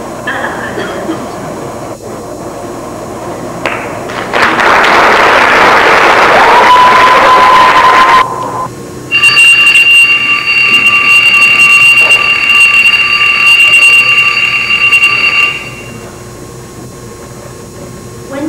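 A loud burst of hiss about four seconds in, with a thin tone rising into it, then a steady high-pitched electronic tone held for about six seconds before cutting off.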